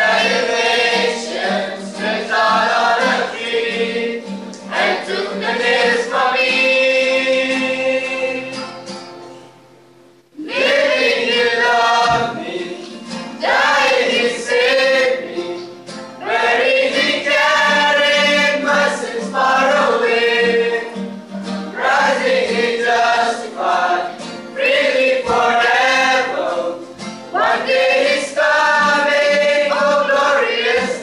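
Gospel singing by a group of voices in harmony, male voices among them. About ten seconds in the singing fades away, then starts again loudly half a second later.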